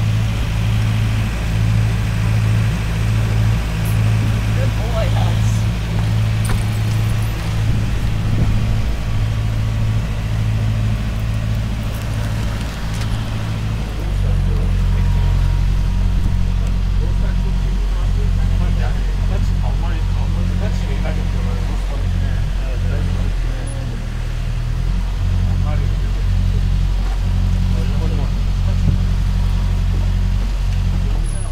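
A large vehicle's engine running steadily with a deep hum, its note shifting to a different speed about 14 seconds in.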